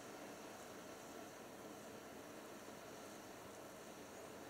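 Faint steady hiss, close to silence, with no crackles or pops standing out.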